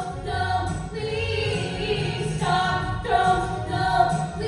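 Three women singing a musical-theatre song together into handheld microphones, their voices amplified through the hall's sound system.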